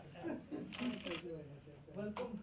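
Low, indistinct conversation in a room, with a rapid burst of camera shutter clicks lasting about half a second just under a second in.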